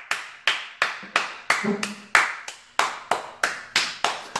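One person clapping her hands in a steady run, about three claps a second.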